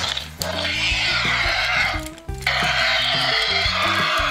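Sound effect from a Primal Attack Pteranodon action figure, set off by its button: two long, harsh screeches, the second starting about half a second after the first ends.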